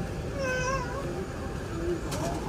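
Steady cabin noise of an Airbus A380 in flight, with one short, high-pitched, wavering cry about half a second in.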